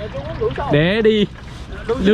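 A man's voice making two short drawn-out vocal sounds, the second longer and louder, rising then falling in pitch, over a low steady rumble.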